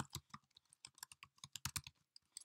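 Computer keyboard being typed on: a quick, uneven run of faint key clicks.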